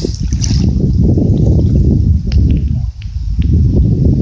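Breeze buffeting the microphone: a loud, steady low rumble with a few faint ticks about halfway through.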